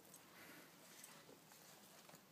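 Near silence: faint background hiss.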